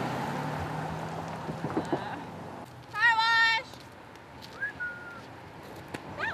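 A car drives past close by on the road, its engine and tyre noise fading out after about two and a half seconds. About three seconds in there is a single short, loud, high-pitched call.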